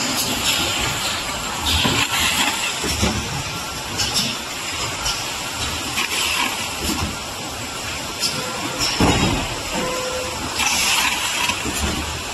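Bottling and case-packing line machinery running with a steady din, with short hisses of compressed air and scattered clunks as a gripper case packer sets 5-litre oil bottles into cartons.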